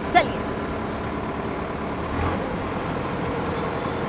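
Sonalika DI-750 III tractor's diesel engine running steadily, with street traffic around it.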